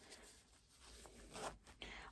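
Near silence, with a faint, short zip about a second and a half in as the invisible zipper in a pair of cotton shorts is pulled closed, followed by light fabric handling.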